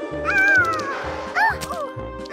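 Background cartoon music with a steady beat, over which a cartoon lion cub makes wordless, meow-like vocal cries: a long falling groan, then a short rising-and-falling cry about a second and a half in.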